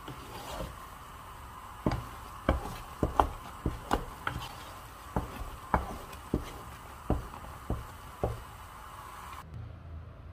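Wooden spatula knocking and scraping against a stone-coated pot while turning a stiff cauliflower mash, about a dozen irregular knocks.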